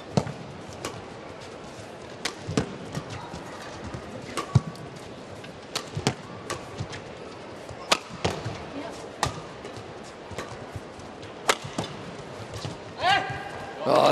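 Badminton rally: sharp clicks of rackets striking the shuttlecock, unevenly spaced about one a second, over a low arena background. A voice rises near the end.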